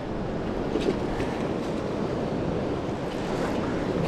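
Steady rush of a fast-flowing river, running high after rain.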